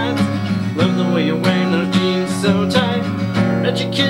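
Steel-string acoustic guitar strummed in a steady country-pop rhythm, with a man singing over it.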